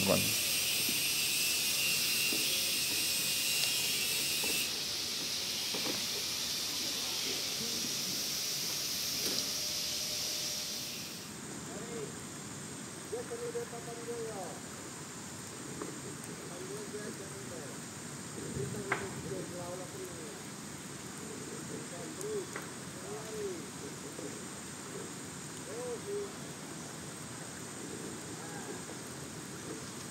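A steady high-pitched hiss that thins about four seconds in and cuts off abruptly about eleven seconds in. After it come faint short calls over a quiet background.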